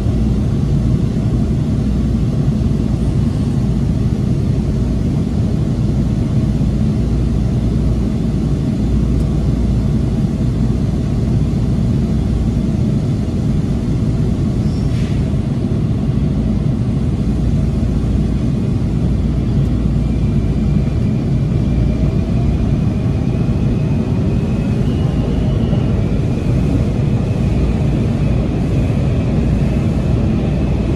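Steady rumble of a WMATA Breda 2000-series Metrorail car running on the rails, heard from inside the car. A brief click comes about halfway through, and faint tones rise slowly in pitch over the last ten seconds.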